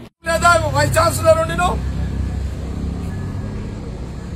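A man's voice for about a second and a half, then a steady low rumble of road traffic from the street.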